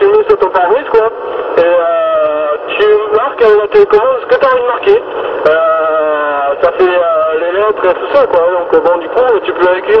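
A man's voice received over a CB radio set in sideband (USB), talking without pause and sounding thin, cut off below about 300 Hz and above about 4 kHz.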